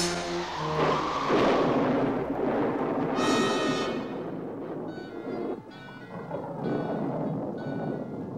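A sudden crash like a thunderclap, then a loud rumbling rush as a column of green magic fire rises, over dramatic orchestral film music. The rumble dies away about four seconds in, leaving the music.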